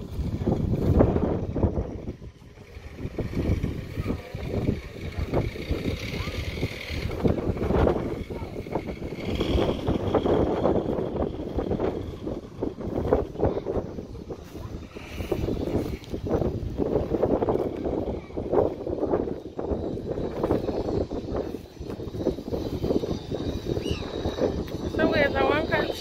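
Gusty wind buffeting a phone's microphone outdoors, with indistinct voices of people nearby.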